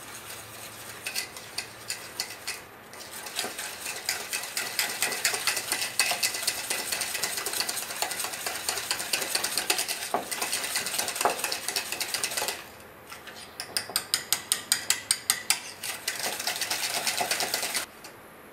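Wire balloon whisk beating egg yolks and sugar in a stainless steel bowl, the wires clicking rapidly against the metal. After a brief pause near the end, the strokes come slower and more distinct, about four a second.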